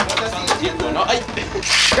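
Spinning Beyblade Burst tops clacking against each other in a plastic stadium, with quick sharp clicks, over background music. A short burst of hiss comes near the end.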